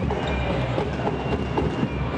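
Court sound of a futsal match in a sports hall: the ball being kicked and shoes squeaking on the wooden floor, scattered knocks over a steady low hum of the hall.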